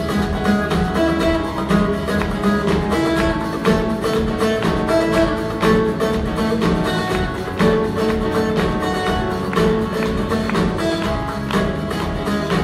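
Live band playing a song: acoustic guitar to the fore over drums, bass guitar and keyboards, with a steady drum beat.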